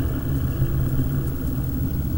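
Low, steady rumbling drone of a few held deep tones, the sound design of a horror film logo intro.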